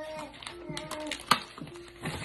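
A handheld corner-rounder punch clicking as it is pressed down to round off a sheet's corner, with one sharp click about a second in. Faint voices in the background.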